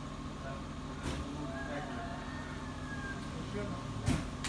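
A vehicle engine idling steadily, with a single click about a second in.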